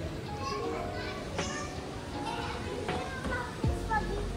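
Children's voices chattering and calling out in short, high bursts over background music.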